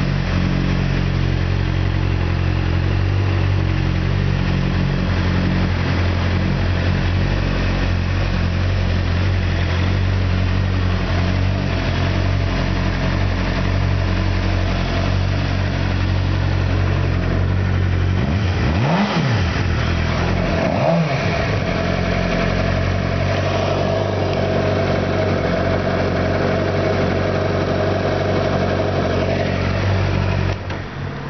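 2006 Suzuki GSX-R 600's inline-four engine idling steadily, blipped twice about two seconds apart a little past the middle, the revs rising and falling quickly each time.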